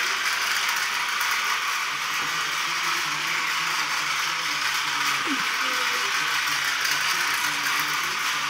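Toy train's small motor and plastic gears whirring steadily as it runs around its plastic track.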